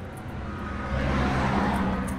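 Road traffic: a passing vehicle's low engine rumble and tyre hiss, swelling about a second in.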